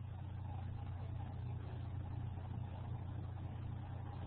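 A steady, faint low hum of background noise with no other sound.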